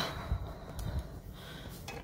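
Faint handling noises: a few soft low bumps and a couple of light clicks as hands fumble with the camera and items on a cloth-covered table.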